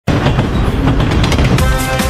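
Cartoon steam-train sound effect, a loud, noisy rumble with no clear pitch. About one and a half seconds in it gives way to the opening of a children's song.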